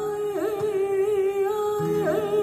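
A female flamenco singer holding one long, wavering note in a seguiriya. About half a second in, the note dips and climbs back.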